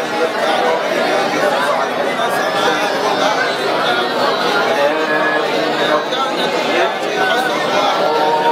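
Many men's voices reading the Qur'an aloud at the same time, each at his own pace, so the recitations overlap into one continuous babble with no pauses.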